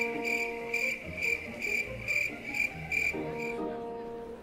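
Cricket chirping sound effect: a regular run of short, high chirps about three a second that stops a little before the end, over soft background music with held notes. It is the comic cue for an awkward silence after a remark falls flat.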